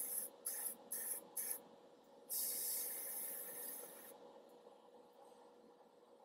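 Airbrush spraying paint in four short puffs about half a second apart, then one longer spray of about two seconds that tails off.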